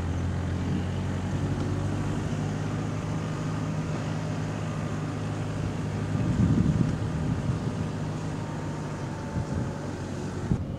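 Car engine running at steady, unchanging revs, heard from inside the cabin, with a brief louder swell about six seconds in.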